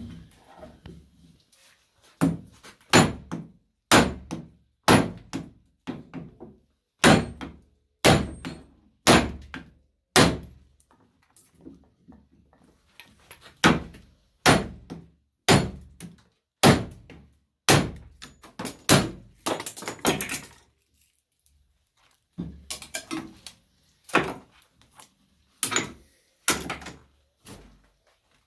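Hammer blows on the laminated steel core of a microwave oven transformer held in a steel vise, about one sharp strike a second with a few short pauses. The core is being beaten apart along its welded seams to free the copper coils.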